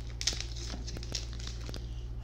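Light crinkling of a Yu-Gi-Oh! booster pack's foil wrapper being peeled open and handled, a scatter of small crackles over a low steady hum.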